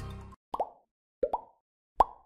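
Short rising 'bloop' pop sound effects, three of them about three quarters of a second apart, laid over an animated graphic as the music ends in the first half-second.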